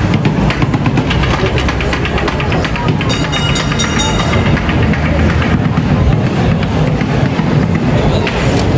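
Red heritage street tram rolling slowly along its rails with a low rumble of motor and wheels, close by, over the chatter of a dense street crowd. A few higher steady tones come in for a couple of seconds in the middle.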